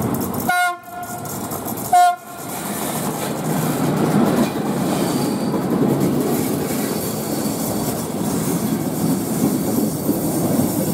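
A CFR Călători class 41 electric locomotive sounds its horn in two short blasts, about half a second and two seconds in, the second louder. Then its train of passenger coaches rolls steadily past with a continuous rumble of wheels on rail.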